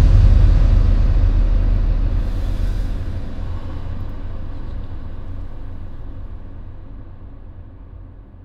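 Dark ambient drone: a deep, low rumble that fades steadily away.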